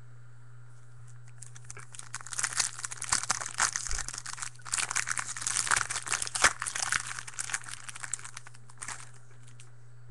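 Foil wrapper of a 2013 Topps Platinum football card pack being torn open and crinkled by hand. It is a dense crackling that starts about a second and a half in and stops about nine seconds in.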